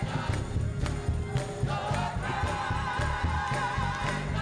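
Live gospel song: a small group of women singing held, wavering notes into microphones over a band with heavy bass, with sharp hand claps on the beat.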